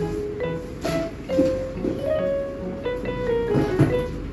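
Background music: a light melody of plucked-string notes, a few notes a second.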